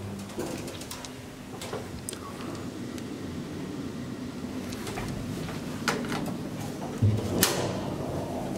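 Schindler elevator's sliding car doors and car at a landing: a steady low hum with scattered clicks and knocks from the door gear, the sharpest knock near the end.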